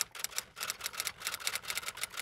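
A fast, uneven run of sharp mechanical clicks like typewriter keystrokes, several a second: a typing sound effect laid over a title card.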